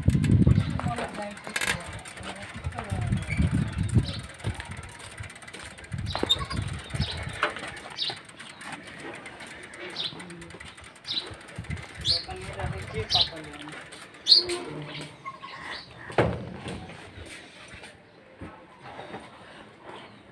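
A bird calling, a short high chirp repeated about once a second for several seconds, over low muffled rumbling noise.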